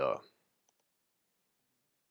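The tail of a spoken word, then near silence with a couple of faint clicks about half a second in, from clicking to select a file on a laptop.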